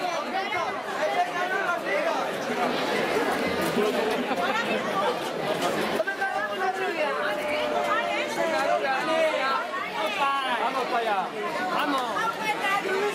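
A group of young men talking over one another at once: overlapping chatter with no single voice standing out.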